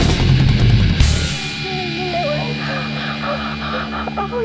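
Nu metal/rapcore band playing a heavy distorted passage that stops on a final hit about a second in, leaving a held chord ringing on. A voice talks over the ringing chord in the second half.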